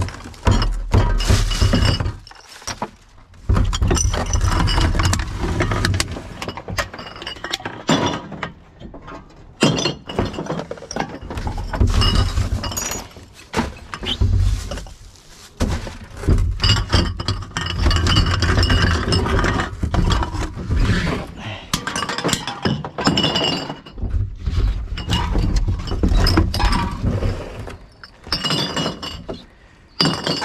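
Glass beer bottles and aluminium cans clinking and clattering, handled one after another as they are picked out of a plastic wheelie bin and dropped among other bottles. Irregular dull knocks of handling against the bin come in between.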